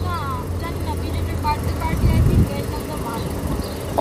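A car idling with a steady low hum, with faint voices in the background.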